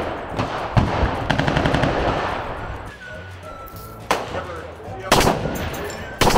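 Automatic weapon fire: rapid bursts of shots for the first couple of seconds, a short lull, then a few louder sharp bangs near the end.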